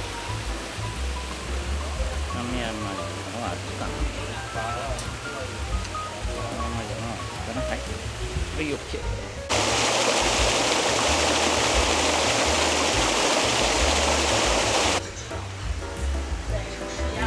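Voices in the background over a low rumble. About nine and a half seconds in, a loud, steady rushing noise cuts in suddenly and stops just as suddenly some five seconds later.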